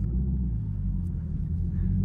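Camaro ZL1 1LE's supercharged V8 at a steady cruise, heard from inside the cabin as a low, even rumble.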